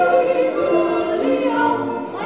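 Voices singing a Swiss yodel song together, in harmony, with long held notes stepping between pitches.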